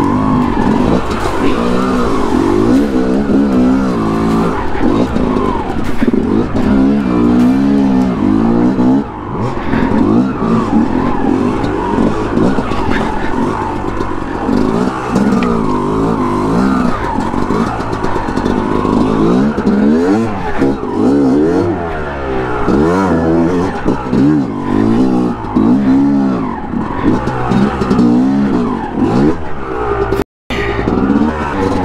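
2005 Yamaha YZ250 two-stroke single-cylinder dirt bike engine revving up and down over and over under changing throttle on rough trail, with scattered knocks from the bike over rocks.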